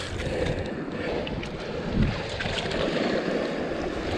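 Shallow seawater sloshing and lapping around rocks, with wind on the microphone and a brief low bump about halfway through.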